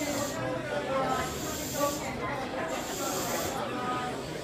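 Repeated bursts of air hissing, each about a second long and coming back every couple of seconds over a low hum, from a stopped electric train standing at the platform, with people talking quietly in the background.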